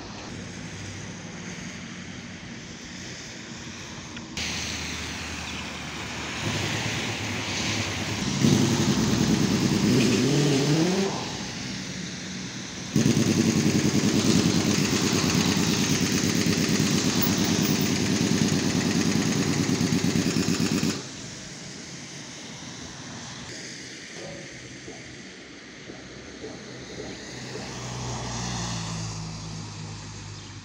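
Motor vehicle engines and road traffic. About nine seconds in, an engine revs up with a rising pitch. From about thirteen seconds a loud, steady engine runs for about eight seconds and then cuts off abruptly, with quieter traffic noise before and after.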